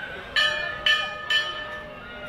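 Temple bell struck three times, about half a second apart, each stroke ringing on and fading.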